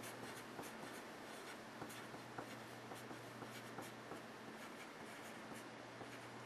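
Wooden Dixon Ticonderoga pencil writing on paper: a run of short, faint scratching strokes as numbers are written out, over a low steady hum.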